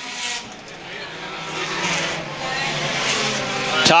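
Pure stock race cars' engines running at speed around a short oval as the leading cars come onto the straight, growing steadily louder.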